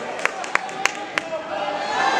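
Hand claps from one person, fast and evenly spaced at about three a second, over the murmur of a gym crowd. The clapping stops a little over a second in, and the crowd voices swell slightly near the end.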